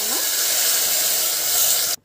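Squeezed tomato pulp sizzling as it hits the hot oil tempering in a steel pot, a loud steady hiss that cuts off suddenly at the end.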